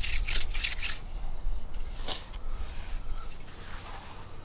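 Stone-tipped wooden drill grinding into a soft argillite stone pendant, with quick rasping strokes, several a second, that stop about a second in; a couple of single scrapes follow.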